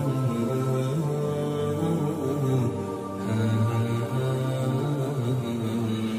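Slow, melodic chanting in a man's voice, long held notes stepping slowly between pitches.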